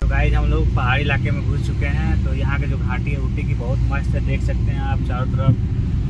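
Steady low rumble of a car's road and engine noise heard from inside the cabin while driving, with people talking over it.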